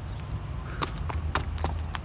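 Low rumble of wind on the phone's microphone, with about five short, sharp clicks in the second half.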